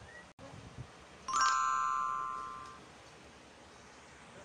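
A single bell-like chime struck about a second in, several bright tones ringing together and fading away over about a second and a half, against a quiet background.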